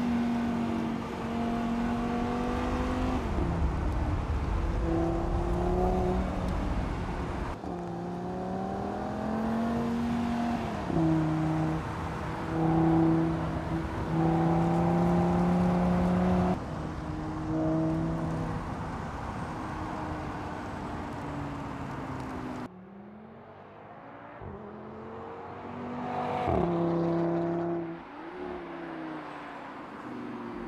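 Audi TT RS's turbocharged 2.5-litre five-cylinder engine accelerating hard, its pitch climbing and then dropping at each upshift, over several edited takes. Near the end it is quieter, swells briefly as the car goes by, then falls away.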